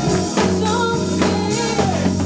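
Gospel choir singing live, with a woman leading on a microphone, over electric keyboard and drums.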